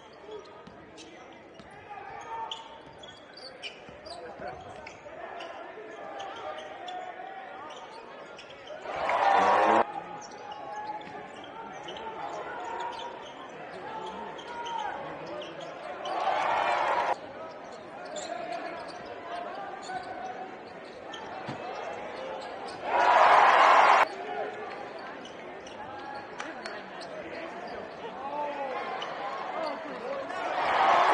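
Live sound of a basketball game in an arena: a ball bouncing and sneakers squeaking on the hardwood under distant voices. Three loud bursts of crowd noise, each about a second long, start and stop abruptly about 9, 16 and 23 seconds in.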